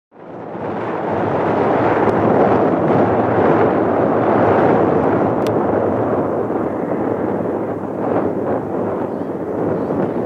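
Jet airliner engine noise: a steady, loud rumble that fades in over the first second.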